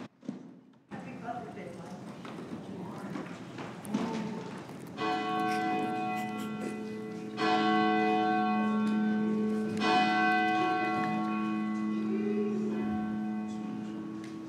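A church bell tolls three times, about two and a half seconds apart, each strike ringing on and overlapping the next. It starts about five seconds in, after quiet room sound with a few small knocks.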